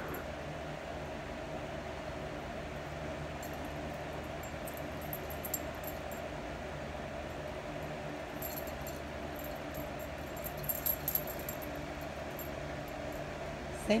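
Light jingling of the dogs' metal collar tags in short spells as two small dogs play, a few seconds in and again past the middle, over a steady background hiss.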